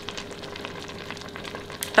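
Faint, steady sizzling crackle from a pot of greens cooking on the stove, over a low steady hum.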